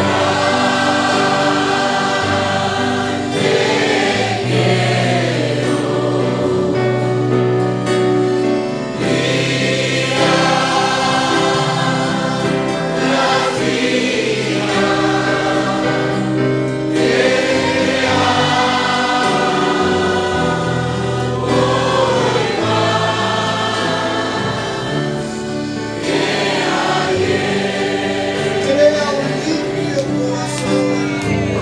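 A congregation singing a worship hymn together in sustained phrases, with instrumental accompaniment underneath.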